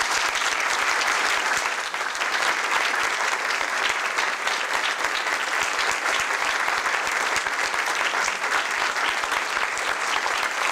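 Steady applause from a roomful of people clapping.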